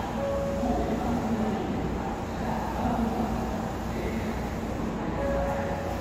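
Inside a Kintetsu electric express train carriage while it runs: a steady rumble of wheels and running gear. A thin higher tone sounds briefly just after the start and again near the end.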